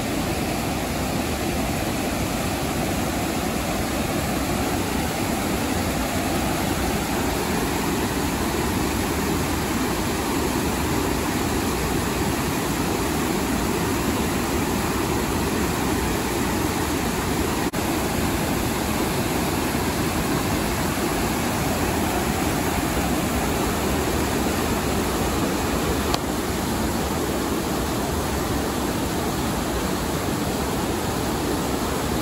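Whitewater rapids of the Menominee River rushing steadily over rocks and ledges at a flow of about 1800 cfs: a loud, continuous wash of water noise.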